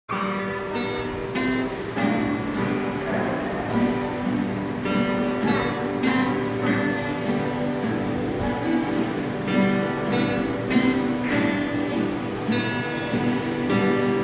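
Two acoustic guitars strummed together, playing a steady run of chords with regular strums.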